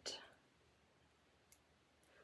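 Near silence: room tone, with one faint click of metal circular knitting needles about a second and a half in.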